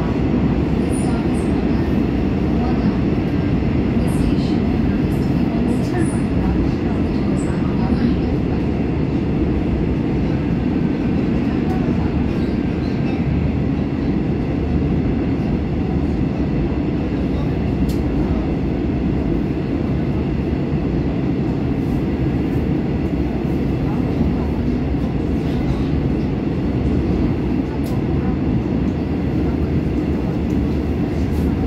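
Steady running noise inside a Woojin-built Korail Line 3 subway car (trainset 395) moving at a constant speed: a continuous low rumble of wheels on rail and running gear, with no rise or fall in pitch.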